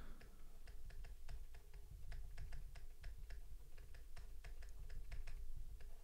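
Stylus tip tapping on a tablet's writing surface during handwriting: a quick, irregular run of light clicks, several a second, over a faint low hum.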